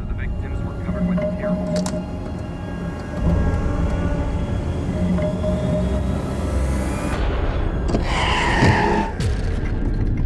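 Film soundtrack mix: a steady low rumble under held music tones, building to a whoosh and a loud, shrill screech about eight seconds in.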